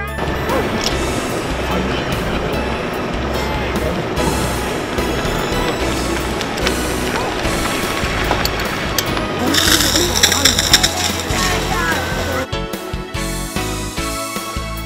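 Background music laid over the outdoor sound of a fire brigade pump drill, with a man's voice calling out. The music changes about a second and a half before the end.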